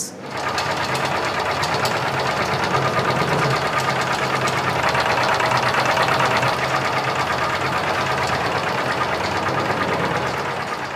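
Rotary tablet press running steadily, pressing and ejecting tablets: a fast, even mechanical clatter from its punches over a low hum.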